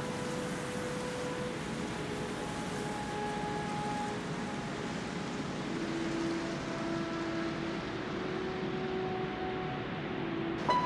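Ambient interlude of a metal album: a steady wash of hiss-like noise with faint held tones underneath that slowly change pitch, a lower tone entering about six seconds in. The top of the hiss fades toward the end.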